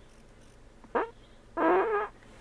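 Quiet car interior: a brief squeak-like sound about a second in, then a short, wavering high-pitched vocal sound from the man in the driver's seat, a half-second groan or yawn-like noise, near the end.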